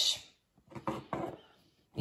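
A few light knocks and clicks of kitchen containers being handled on a countertop, coming after the end of a spoken sentence.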